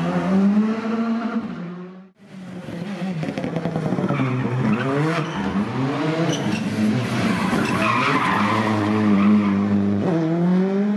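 Turbocharged four-cylinder rally car engines working hard through a tight street corner, pitch climbing and falling with throttle and gear changes. First a Škoda Fabia R5, then, after a sudden break about two seconds in, a Citroën C3 rally car.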